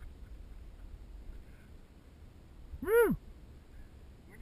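One short, loud whoop about three seconds in, rising and then falling in pitch, over a low rumble of wind on the microphone.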